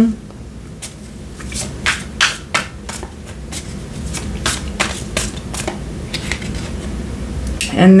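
Tarot cards being handled and shuffled by hand: a run of irregular sharp clicks and snaps of card stock for a few seconds, then fading out.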